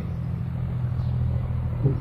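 A steady low hum with a faint rumble, unchanging throughout, in a gap between spoken phrases.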